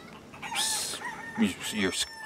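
Chickens clucking in the background, with a short breathy hiss about half a second in and a man's voice starting near the end.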